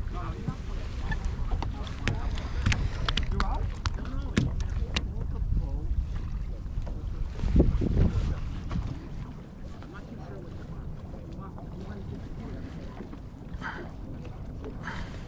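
Wind buffeting the microphone on an open boat, a steady low rumble. Sharp clicks and knocks come in quick succession through the first few seconds, and a louder thump about eight seconds in, after which the rumble settles lower.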